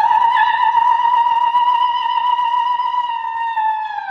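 Operatic soprano singing one long, high held note, steady in pitch, that starts to slide downward at the very end.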